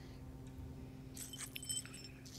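Small metal pieces jingling and clinking for under a second, starting a little past halfway, over a low steady hum.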